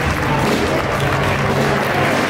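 A dense crowd's noise and applause mixed with music, with some low notes held for about a second and a half.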